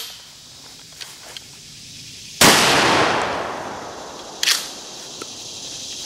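A single shot from a Remington 870 12-gauge pump-action shotgun, fired with a one-ounce rifled slug, about two and a half seconds in; its echo dies away over about two seconds. A short, sharp clack follows about two seconds after the shot.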